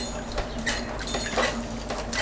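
Electric potter's wheel humming steadily, with a few small wet clicks and taps as a sponge is handled over a freshly thrown clay bowl.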